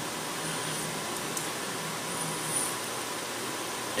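Steady room tone between spoken passages: an even hiss with a faint low hum.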